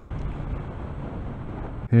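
Steady rush of wind and road noise from a moving motorcycle, picked up by a helmet camera's microphone, with no clear engine note. It stops abruptly near the end.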